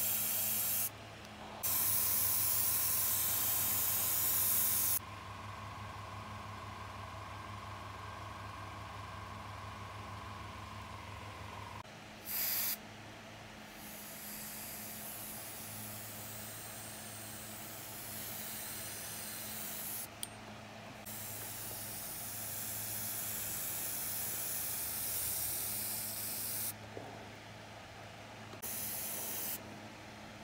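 Airbrush spraying paint in on-and-off stretches of hiss as the trigger is pressed and released, loudest in the first few seconds. A steady low hum runs underneath.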